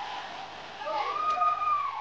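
A person's high, drawn-out vocal call, about a second long, rising and then falling in pitch, starting about a second in, against a hall full of people.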